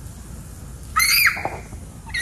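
A toddler's short, high-pitched squeal about a second in.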